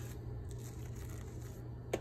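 A table knife spreading mayonnaise across a slice of bread, a soft continuous scraping, over a low steady hum.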